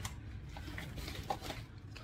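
Faint crinkling and handling noises of a plastic grocery bag being rummaged through as a packaged item is lifted out, over a low steady hum.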